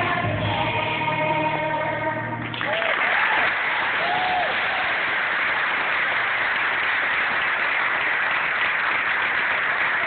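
A children's choir and its accompaniment hold the final note of a song, which cuts off sharply about two and a half seconds in. The audience then applauds steadily, with a few short cheers early in the applause.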